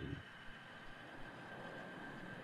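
Faint steady hiss with a thin, high, steady whine under it: the background noise of the stream between words.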